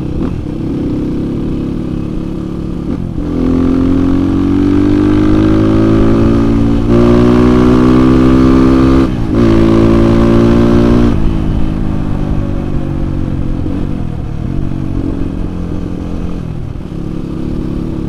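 Kawasaki KLX 150's single-cylinder four-stroke engine, tuned for more power without a bore-up, pulling hard under acceleration. It climbs in pitch for several seconds, drops briefly at a gear change about nine seconds in, climbs again, then eases off as the throttle closes.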